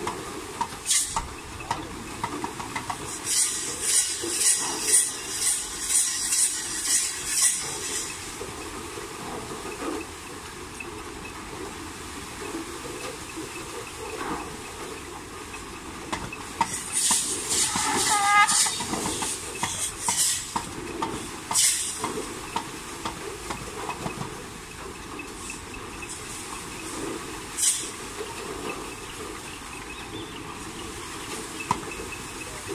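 Bullock-driven Persian wheel (rehat) well turning fast, with a steady hiss and bursts of quick, regular clatter, about three strokes a second. A short shrill call rises and falls about eighteen seconds in.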